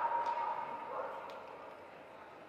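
A hound giving one long, steady, howling cry that fades out about a second and a half in.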